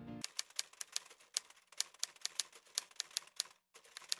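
Keyboard music cuts off just at the start, followed by a run of typewriter key clicks, about five a second, with a short break a little before the end.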